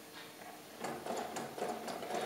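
Homemade two-cylinder, slow-running Stirling engine running, its crank and linkages giving a faint, light ticking that starts about a second in.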